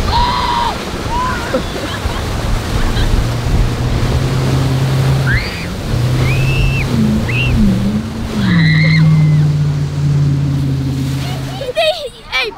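Inboard engine of a Nautique G23 towboat droning steadily under way while towing a tube, over the rush of wake and spray; its note drops briefly just past halfway, then climbs to a higher pitch a couple of seconds later as the throttle is opened. Short high shouts and yells break in several times.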